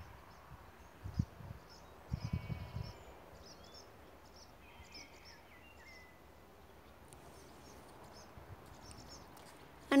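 Faint rural outdoor ambience with small birds chirping and calling: short high chirps about once a second throughout, and a couple of brief whistled calls in the middle. A few short low rumbles come in the first three seconds.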